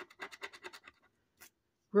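A coin scratching the coating off a scratch-off lottery ticket in quick back-and-forth strokes, about ten a second, stopping about a second in. A faint tick follows.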